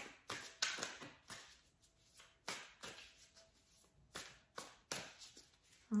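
Quiet handling of a deck of tarot cards being shuffled and drawn: a string of short, irregularly spaced snaps and taps of the cards.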